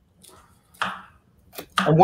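A few knife cuts through raw cauliflower florets on a cutting board: a faint one, a stronger crunching cut about a second in, and a sharp knife tap on the board shortly before speech resumes.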